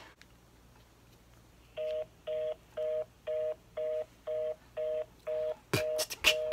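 Telephone busy signal heard over the call: two steady tones sounding together, switched on and off about twice a second. This fast cadence is the reorder tone, which means the call cannot be put through. Sharp percussive beats cut in just before the end.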